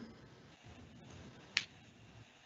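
Faint room tone with a single short, sharp click about one and a half seconds in.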